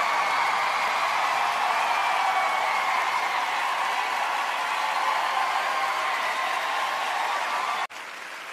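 Audience and judges applauding: dense, steady clapping that cuts off suddenly near the end.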